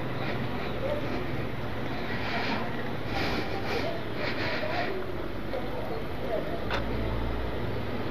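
Outdoor street ambience: a steady low hum with faint voices in the background.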